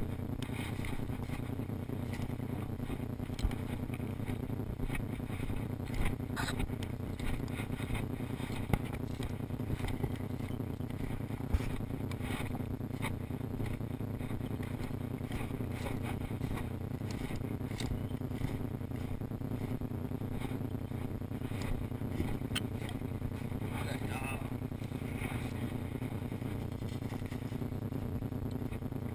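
Steady low rumbling noise from a moving action camera's microphone, broken by a few sharp knocks.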